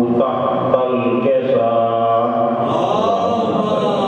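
A man chanting a religious recitation into a microphone, in long held notes that slowly rise and fall in pitch.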